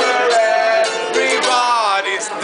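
Acoustic band playing: a mandolin and an acoustic guitar strummed, with a male voice singing a held note that then slides in pitch.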